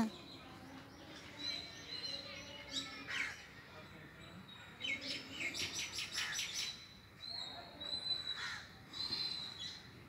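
Birds chirping in short, faint calls, with a quick run of chirps about five to six and a half seconds in.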